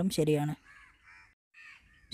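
A voice stops about half a second in, then a bird calls faintly twice in the background with a harsh call, a longer one followed by a short one.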